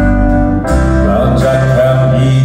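A live band playing a song, with guitars over bass, drums and keyboards.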